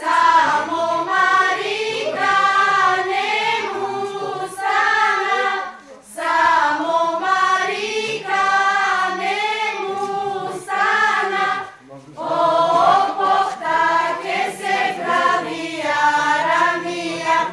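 A group of voices singing a Macedonian folk song, in long phrases of about six seconds, each broken by a short pause for breath.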